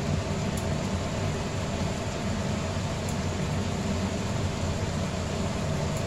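A steady low hum with an even hiss over it, with a couple of faint light clicks of a wooden spatula in a frying pan.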